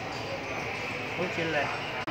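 Busy restaurant room noise, a steady hum of background chatter and table sounds, with a person speaking in Thai from about a second in.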